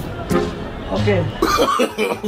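A man's voice making short, broken speech-like utterances.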